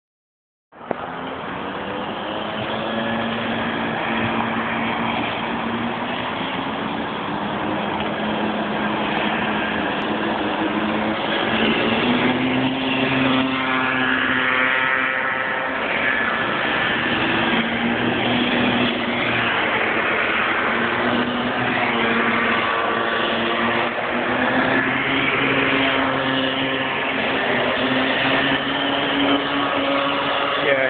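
Several Bambino-class racing karts with small two-stroke engines running around the circuit, their pitches rising and falling as they accelerate out of corners and lift off, and overlapping as the karts pass. The sound starts abruptly about a second in.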